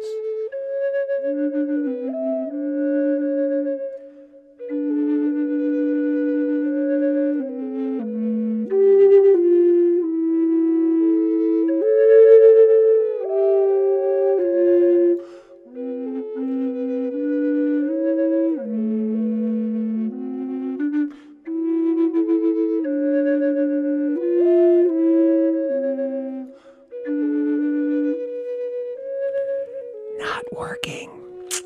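Two Native American flutes sounding together: a lower flute played live over a looped recording of a higher flute, both holding long notes that change in steps. The pairing was judged not to pass the matching test, and the two flutes sound out of tune against each other on some notes.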